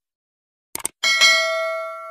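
Subscribe-button animation sound effect: a quick double mouse click, then a bright notification-bell ding about a second in that rings on and fades away.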